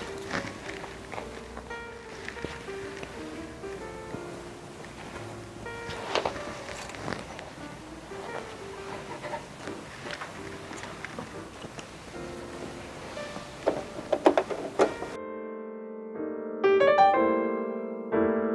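Soft background piano music under faint clicks and rustles of fabric being handled. About fifteen seconds in, the room sound drops out and the piano becomes clearer and louder.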